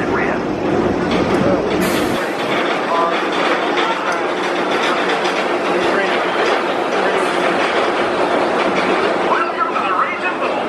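B&M hyper coaster train running along its steel track, a steady rolling rumble from the wheels, with voices mixed in.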